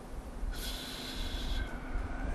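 A person breathing out sharply through the nose near a microphone: a smooth hiss about a second long, starting about half a second in, with a faint whistle, over low room hum.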